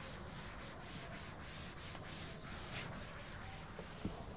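Blackboard duster wiping chalk off a blackboard in fast back-and-forth strokes: a faint, rhythmic rubbing hiss at several strokes a second.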